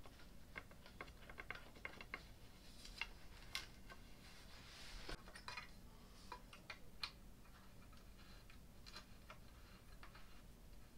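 Faint, irregular small clicks and taps of small crib hardware, screws and metal brackets, being handled and fitted against a painted crib rail, with a brief rustle about halfway through.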